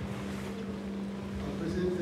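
Low rumble of a handheld microphone being handled and lowered, over a steady electrical hum from the sound system.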